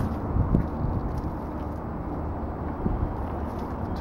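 Steady low outdoor rumble, with a few faint clicks as the swing-release pin of a hitch-mounted platform bike rack is pulled and the rack is handled.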